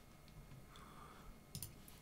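Near silence, with a couple of faint computer mouse clicks about one and a half seconds in.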